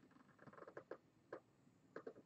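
Faint scratching of an ink marker on paper: several short strokes as black areas of a drawing are filled in.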